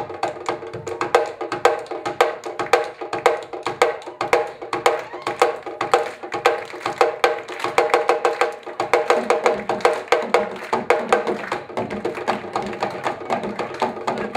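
A Senegalese sabar drum ensemble playing a fast, dense rhythm, the drums struck with sticks and bare hands in sharp strokes many times a second. A lower drum tone joins about nine seconds in.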